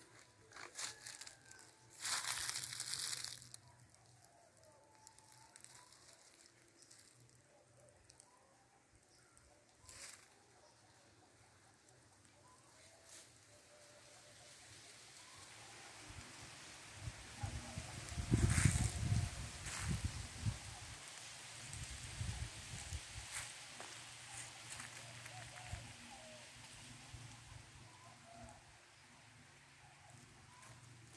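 Dry leaves and twigs crackling and crunching as someone moves through dry scrub and leaf litter, in scattered bursts. There is a loud rustling burst about two seconds in, and a louder stretch with low rumbling bumps a little past the middle.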